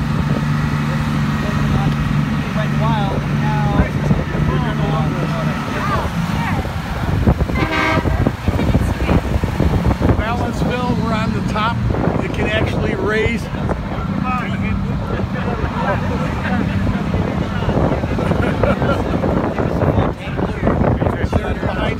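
Vehicle horns tooting over running engine noise, with people's voices calling out, heard from atop a moving art car.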